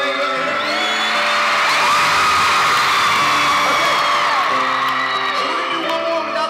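Live pop band playing in an arena with sustained chords, heard from among the audience, while the crowd screams and cheers. The screaming swells about a second in and eases off past the middle.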